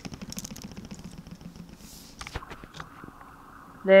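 Plastic Lego bricks being handled by fingers: a quick run of small clicks and ticks for about the first two seconds, then quieter.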